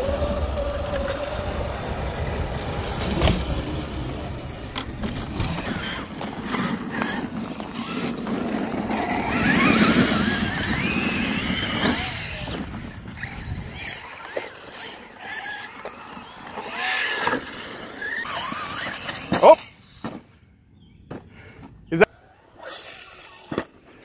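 Electric RC cars' motors whining as they drive over dirt jumps, the pitch gliding up and down with the throttle, loudest about ten seconds in. Quieter in the second half, with a few sharp knocks in the last few seconds.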